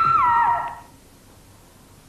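A woman's high-pitched scream, rising, held, then falling in pitch and breaking off just under a second in.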